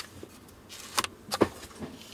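Small hard clicks of a camera lens being handled, a Canon RF16mm F2.8 STM: a click at the start, a short scrape ending in a sharp click about a second in, and two quick clicks just after.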